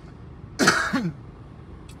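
A man makes one short, harsh vocal burst with a falling pitch about half a second in. It is heard over quiet car cabin noise.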